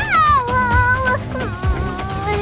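High, squeaky wordless cartoon-character cry that swoops up, falls and then holds for about a second, followed by a shorter cry, over background music.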